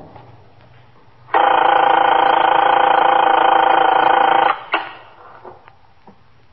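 A telephone rings once, one steady ring of about three seconds beginning about a second in, followed by a couple of faint clicks as the receiver is picked up.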